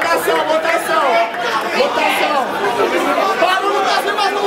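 Crowd chatter: many voices talking and calling out over one another at once, steady throughout.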